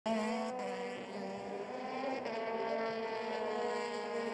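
Single-seater racing car engines running at high revs, a steady note with several tones that shifts slightly in pitch.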